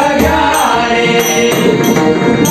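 Marathi devotional bhajan: group singing over a harmonium drone, with a pakhawaj-style barrel drum and small hand cymbals (taal) struck in a steady beat of about two clashes a second.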